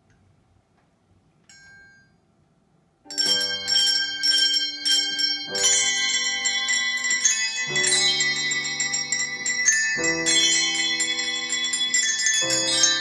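A handbell choir of brass handbells begins playing about three seconds in, ringing a series of held chords that change roughly every two seconds. Before that it is near silent except for one faint, brief bell ring about a second and a half in.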